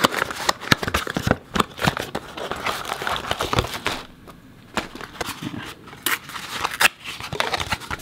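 A small cardboard box and its packaging handled and opened by hand: a busy run of sharp clicks, scrapes and rustles of card, with a brief lull a little after halfway through.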